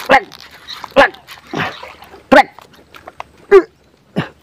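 A dog barking, several short single barks about a second apart.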